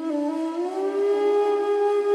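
Background music: a flute comes in loudly, slides up in pitch over the first second, then holds one long steady note.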